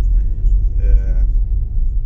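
Low, steady rumble of a Citroën C4 Picasso 1.6 HDi diesel on the move, heard from inside the cabin, with a brief voice sound about a second in.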